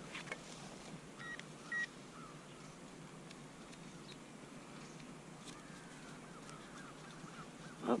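Two short beeps from a Minelab Equinox metal detector a little after a second in, then faint clicks and scrapes of a hand digger cutting into grassy soil over a target.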